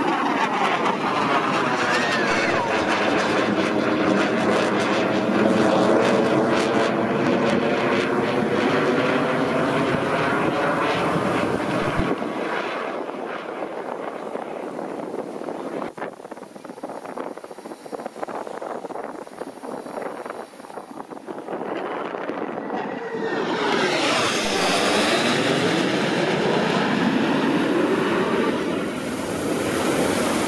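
Jet noise from Blue Angels F/A-18 Hornets flying overhead, loud with a sweeping shift in tone as a jet passes. It drops off abruptly about twelve seconds in. Another pass builds up loud again near the end.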